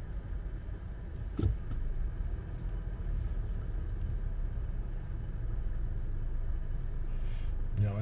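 Low, steady engine and road rumble heard from inside a car's cabin as it moves slowly in traffic, with a single short knock about a second and a half in.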